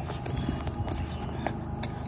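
Footsteps on loose limestone rock, with a few irregular sharp clicks of stone underfoot.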